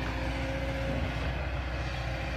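Excavator's diesel engine running steadily, a low even drone.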